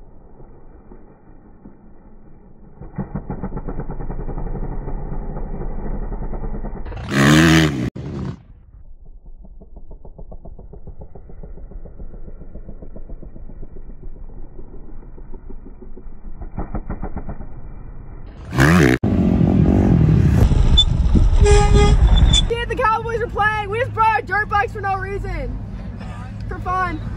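Motocross dirt bike engine revving hard in waves as it rides and jumps, with two short, very loud bursts about eleven seconds apart.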